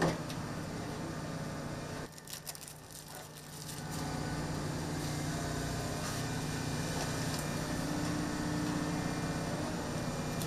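Steady low machinery and ventilation hum aboard a drilling ship, with steady low tones. It drops for a second or two about two seconds in, where a few light clicks are heard, then carries on evenly.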